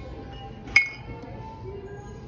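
Ceramic mugs knocked together by a hand reaching among them on a shelf: one sharp clink with a short ring, a little under a second in.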